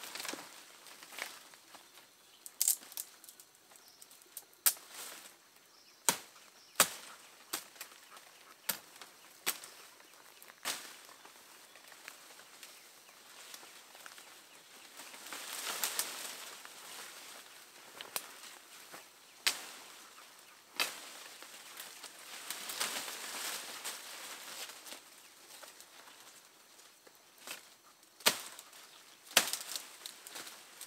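Foliage rustling and stems and twigs snapping as a person picks from a dense thicket of shrubs and vines by hand: a dozen or so sharp snaps spread through, with two longer bursts of leaf rustling, about halfway through and again a little later.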